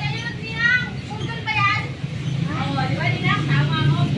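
High-pitched voices, like children calling and playing, over a steady low hum.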